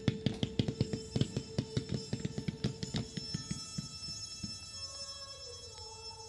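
Fireworks cake firing a rapid, even string of shots, about six a second, that thin out and stop about four seconds in, over the held notes of the national anthem playing as music.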